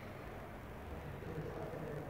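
Indistinct background room noise: a steady low rumble, with faint, distant voice-like sounds coming in near the end.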